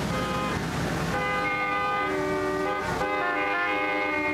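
Freeway traffic rumble, joined from about a second in by several car horns honking in long, overlapping tones. The traffic rumble drops away about three seconds in while the horns go on.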